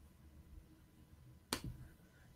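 Near silence, then a single sharp click about a second and a half in.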